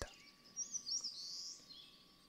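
Faint birdsong: a short run of high chirps and twitters between about half a second and a second and a half in, then a few fainter calls near the end.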